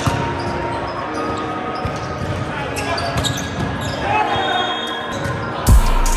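Indoor volleyball rally in a large echoing gym: ball contacts and scattered voices of players and onlookers, with a loud hit on the ball near the end.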